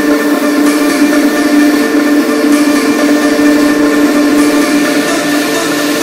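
Tech house breakdown: a sustained synth chord held steady, with the kick drum and bass taken out.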